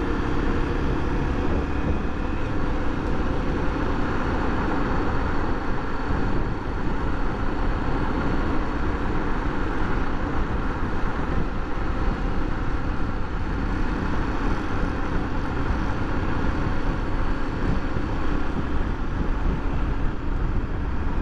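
Honda XRE300's single-cylinder engine running steadily as the motorcycle rides along a city avenue, mixed with wind and road noise on the rider's camera microphone.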